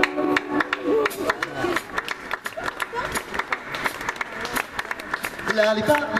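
Concert audience voices and scattered hand clapping in a break in the music. The band's singing and playing come back in near the end.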